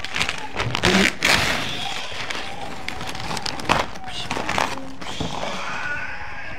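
Brown kraft wrapping paper being torn off a flat package by hand: a long loud rip about a second in, then shorter tears and crinkling.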